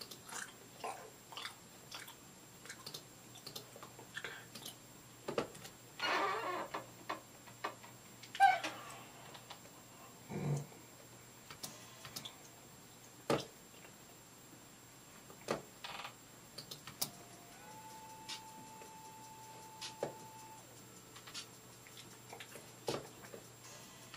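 Faint, scattered clicks and taps of someone working a computer at a desk, with two short hissy sounds about six and eight seconds in, and a faint steady tone for a few seconds near the end.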